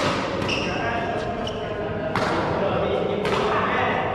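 Badminton rally: rackets hitting the shuttlecock in sharp cracks about a second apart, echoing round the hall, with short squeaks of shoes on the court floor.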